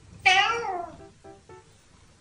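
A domestic cat gives one loud meow, about half a second long, falling in pitch toward its end.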